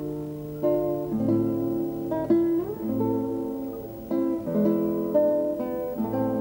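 Instrumental music on plucked strings: guitars playing chords under a melody, with new notes struck about every second, from a student tuna ensemble.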